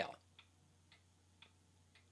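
Quiet, with three faint, short clicks about half a second apart.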